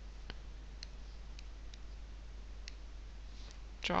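A handful of faint, irregular clicks, about six in all, as an equation is keyed into a graphics calculator, over a low steady hum.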